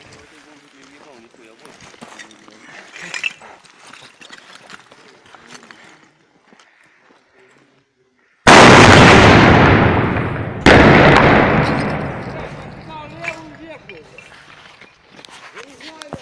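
RPG fired at close range: a very loud blast about eight seconds in, then a second almost equally loud blast about two seconds later, each trailing off over a couple of seconds. Faint voices come before and after.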